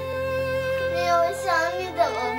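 Soft background score of steady held notes. About a second in, a young boy's crying voice wavers over it.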